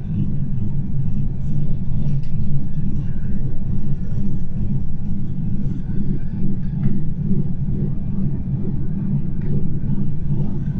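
Gornergrat Bahn electric rack-railway train running steadily, heard from inside the carriage: a loud, even low rumble with a steady hum from the drive and running gear.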